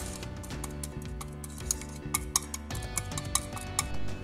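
Background music, with scattered light clicks of a small wire whisk against a glass dish as an egg mixture is beaten.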